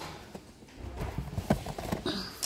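A few sharp knocks and clicks, the loudest about one and a half seconds in, from hardcover spiral-bound planners being handled and pulled off a shop shelf.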